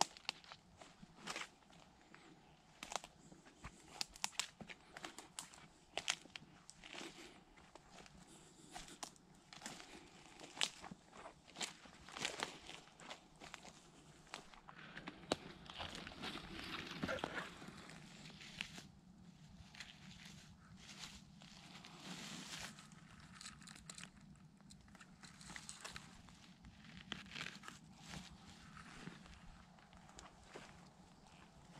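Faint footsteps through grass and fallen leaves, with scattered crackles of twigs and dry leaves and a few longer stretches of rustling vegetation.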